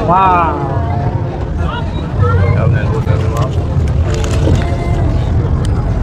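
Low, steady rumble of a river tour boat's engine, loudest from about two seconds in, under faint chatter from passengers on deck.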